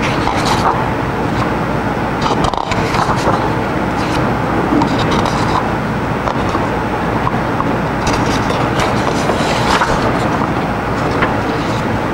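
Loose sheets of paper rustling and being turned over at a lectern, with short crisp rustles scattered through, over a steady rushing background noise and low hum.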